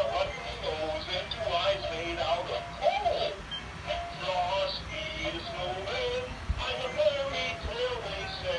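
Animated plush snowman toy singing a song with music through its small built-in speaker, a thin electronic-sounding voice.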